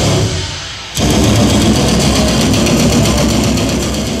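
Death metal band playing live, drums and guitars filling the sound. It thins out briefly just after the start and comes back in loud at about a second.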